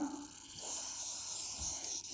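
WD-40 aerosol can spraying through its thin straw onto a wiper arm hinge: a steady high-pitched hiss that starts about half a second in.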